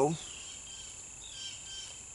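Crickets chirping steadily at a high pitch in the background, with faint short downward chirps recurring about once a second. The tail of a man's word is heard at the very start.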